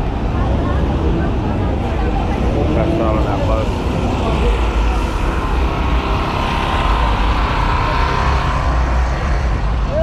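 Busy city street noise: a loud, steady low rumble with voices mixed in.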